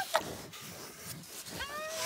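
Rhino calf crying for milk with high-pitched, squeaky calls: one cut off right at the start, then a rising cry in the last half second. A sharp click just after the first call is the loudest moment.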